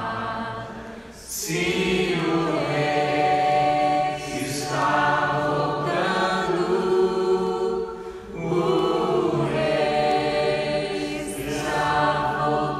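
Unaccompanied singing: slow phrases of about three seconds each, with short breaks for breath between them.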